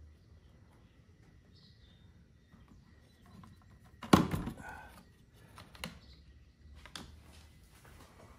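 Handling noise from wires being pushed into a plastic trolling motor head housing: faint rustling, one loud thunk about four seconds in, then a few lighter clicks.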